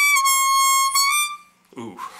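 Six-hole draw on an F diatonic harmonica: a single high note bent slightly down in pitch, then released back up, and fading out about a second and a half in. The bend is small and hard to get, and the player takes the harp to be a little clogged.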